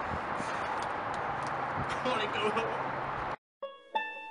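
Steady outdoor background noise with faint voices, which cuts off suddenly to silence about three seconds in; plucked-string music starts just before the end.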